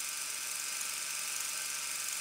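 A steady, even whirring hiss with no distinct events.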